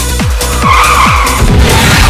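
Electronic dance music with a steady kick-drum beat, overlaid about half a second in by a tyre screech lasting under a second, followed by a loud rushing noise near the end.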